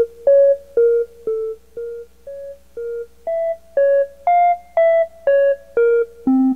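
A simple synthesizer melody of single keyboard-like notes, about two a second, stepping up and down in pitch; a few notes in the middle are softer before the loud notes return. A steady low hum runs beneath.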